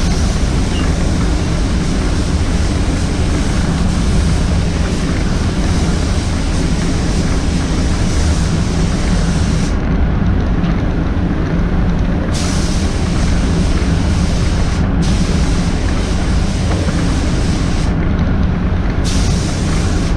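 Paint booth air handling running steadily, with the hiss of a compressed-air spray gun cutting in and out as the trigger is pulled: one long pass, a pause about ten seconds in, then shorter passes with brief stops.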